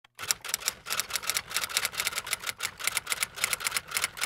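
Typing sound effect: a rapid, uneven run of crisp key clicks, about six a second.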